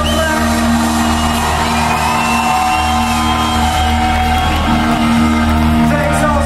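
Live rock band playing a slow number, with long held keyboard chords over a steady bass note and gliding higher lines, while the audience shouts and whoops.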